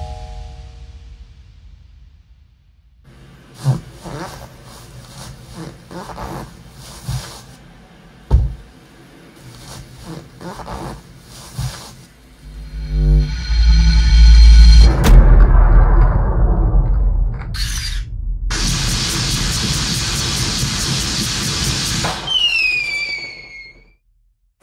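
Sound-designed cartoon soundtrack of music with effects: it opens on a fading chime, has scattered hits, builds to a loud low rumble, then a loud electrical zapping crackle of an electric fence discharging lasts a few seconds, followed by a few falling whistling tones.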